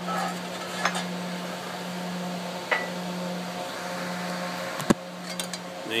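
Metal clinks and knocks as a dimple die and an 18-gauge steel gusset are handled and taken out of a press: a few light clicks, one short ringing clink, and one sharp knock near the end, followed by small clicks. A steady hum runs underneath.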